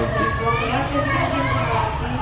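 Children's voices talking and calling out, over a steady low rumble.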